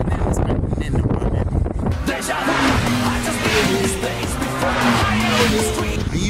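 Wind buffeting the microphone, then from about two seconds in a melody of held notes that step up and down in pitch.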